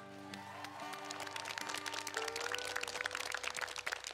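The band's final chord rings out and fades as audience applause starts and swells, growing louder toward the end.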